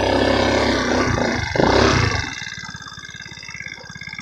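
150cc GY6 scooter's four-stroke single-cylinder engine revving under throttle, then dropping back to a low, even idle about two seconds in.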